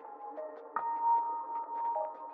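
Generative lo-fi electronic music from a BespokeSynth patch: soft, sustained synth tones. A new held note comes in just under a second in. The sound is dull, with no top end.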